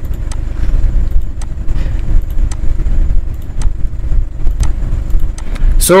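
A steady, loud low rumble with faint, sharp clicks about once a second.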